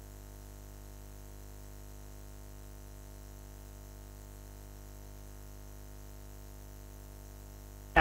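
Dead air on a broadcast audio feed: only a steady electrical hum and buzz, unchanging throughout.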